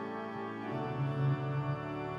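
Church pipe organ playing sustained chords, with a new, deeper bass note coming in about a second in.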